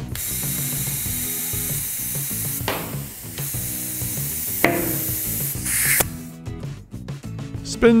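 Compressed air hissing from a Park Tool INF-2 shop inflator into a tubeless mountain bike tire as it is reinflated, cutting off suddenly about six seconds in. There are two sharp pops about three and five seconds in, as the soap-lubricated tire bead snaps onto the rim's bead seat.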